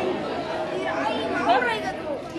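Overlapping chatter of several people's voices, no one voice standing out.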